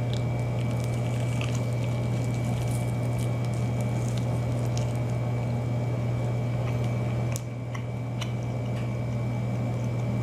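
Wet chewing of a sauced chicken wing, with small scattered mouth clicks and squishes, over a steady low hum that dips slightly about seven seconds in.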